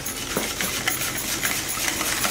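Wire whisk beating thin curd in a glass bowl to dissolve sugar, its wires clinking and scraping against the glass in quick, irregular ticks.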